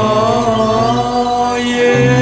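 Burmese pop song: a long held vocal note with vibrato over sustained instrumental backing, and a new bass note coming in at the end.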